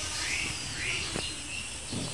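A bird chirping over and over, short high arching calls about two a second, over a faint steady hiss.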